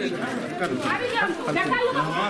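Several people talking at once, their voices overlapping in a crowd.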